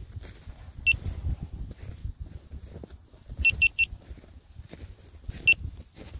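Short high-pitched beeps: a single beep, then a quick run of three, then one more, over a low rumble.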